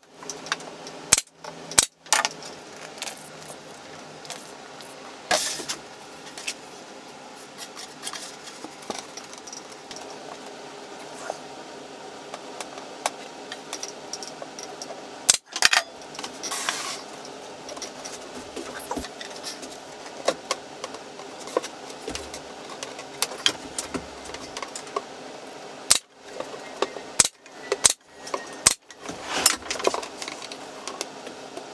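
Pneumatic 23-gauge pin nailer firing 25 mm pins into the glued mitred corners, each shot a sharp snap. There are several shots near the start, one about halfway, and a quick run of four or five near the end. In between, light rattling and handling of clamps and rope.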